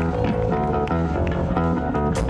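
Live rock band playing amplified electric guitars and bass guitar, a run of chords that changes every fraction of a second.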